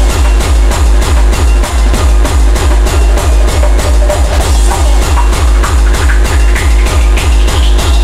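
Hardcore techno: a fast, steady, pounding kick drum under synth stabs, with a rising synth sweep building near the end.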